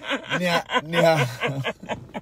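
A person chuckling and talking, with voice sounds that break and bend in pitch like laughter mixed with speech.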